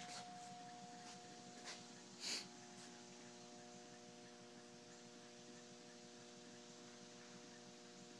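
Near silence: a faint steady hum, with a brief soft hiss about two seconds in, as a small brass hot air walking-beam engine runs almost silently.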